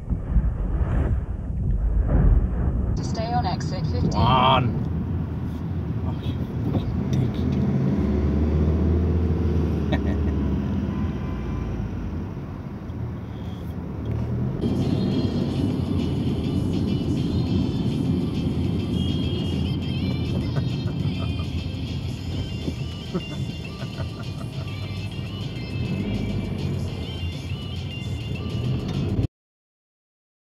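Radio music and voices playing inside a car, over the low rumble of the engine and road noise. The sound changes character about halfway through and cuts off abruptly just before the end.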